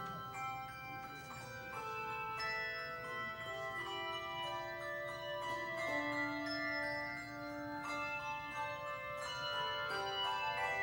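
Handbell choir ringing a piece: struck bell notes overlapping and ringing on, several pitches sounding together as new notes come in.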